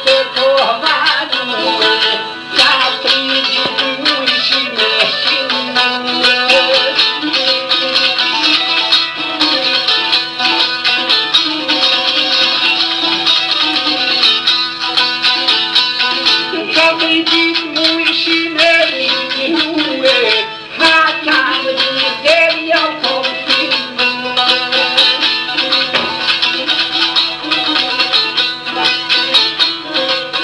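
Albanian folk music led by a plucked long-necked lute playing a busy, continuous melody.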